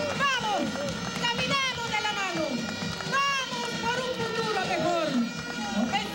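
Voices shouting through a handheld microphone's public-address sound amid a rally crowd, in repeated rising-and-falling cries about once a second.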